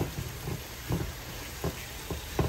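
A wet beetroot, carrot and onion sauté sizzling quietly in a frying pan while a silicone spatula stirs it, with a few soft scrapes and pushes of the spatula through the vegetables.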